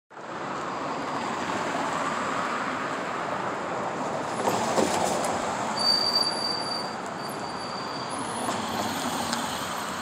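Steady city street traffic noise, with a brief high squeal about six seconds in.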